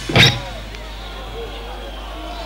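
Live heavy metal band playing a last loud hit that breaks off about a third of a second in, leaving the faint murmur and scattered shouts of a stadium crowd.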